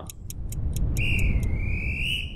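Segment-transition sound effect: a ticking like a clock, about four ticks a second, under a low rumble that swells, then about halfway through a long whistle blast that dips slightly in pitch and rises again.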